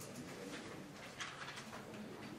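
Faint, muffled murmur of low voices in a large lecture hall, with a brief rustle a little over a second in.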